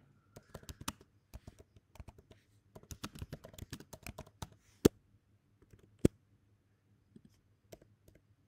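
Typing on a computer keyboard: quick, irregular runs of key clicks, then two much louder single key strikes near the middle, and after that a few sparse keystrokes.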